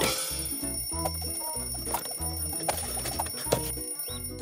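A twin-bell wind-up alarm clock ringing continuously over cartoon background music.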